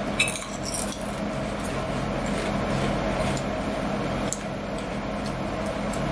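Two people biting into and chewing crunchy sweet potato snack sticks: a few sharp crunches at the first bites just under a second in, then steady crunching as they chew.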